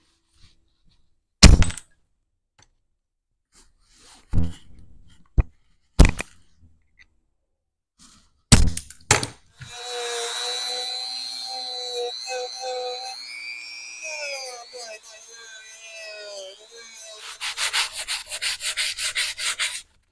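Aviation snips cutting a copper strip in several sharp snips. From about halfway through, a rotary tool with a sanding drum whines at high speed as it smooths the copper, its pitch shifting up briefly, and it ends in a fast run of rapid rasping strokes.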